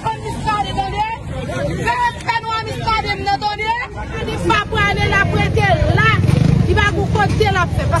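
Several people talking over one another outdoors, in a language the recogniser does not transcribe, over steady low street noise.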